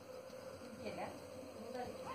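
Steady, even insect buzzing, with faint voices in the background.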